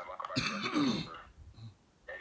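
A man clears his throat once, a short rough burst just under half a second in that lasts about half a second.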